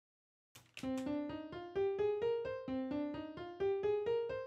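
FL Studio's FL Keys piano plugin playing back a run of single notes written along a scale in the piano roll. The notes come about four a second and step up and down in pitch, starting about half a second in.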